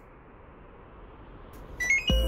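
Faint steady hiss, then near the end a quick run of three or four short electronic beeps stepping up in pitch: an air conditioner's control-board beeper chiming as the unit is powered.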